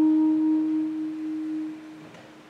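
Clarinet holding one soft, nearly pure low note at the end of a descending phrase; the note fades and stops near the end.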